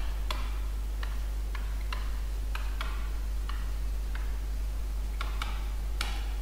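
Pen stylus clicking against an interactive whiteboard's surface as handwriting is put down, sharp ticks at uneven spacing of roughly two a second, over a steady low hum.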